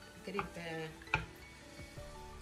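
Background music and one short spoken word, with a single sharp clink of cookware a little over a second in as crushed tomato is scraped from a glass dish into a stainless steel pot.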